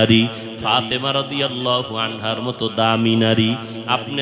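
A man's voice chanting a sermon in a melodic tone. The phrases are short, and one long note is held for over a second in the second half.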